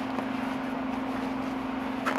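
A steady low hum over faint even background noise, with no distinct handling sounds.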